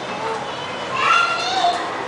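A small child's high-pitched voice, a short call rising in pitch about a second in, over a low background of room noise.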